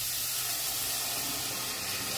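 Thick tomato-based sauce liquid pouring from a measuring jug into a hot pot of sautéed onions, with a steady hiss as it hits the hot pan.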